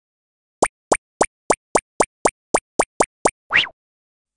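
Cartoon plop sound effects for an animated intro: eleven quick pops in an even run of about four a second, then a longer pop that rises and falls in pitch near the end.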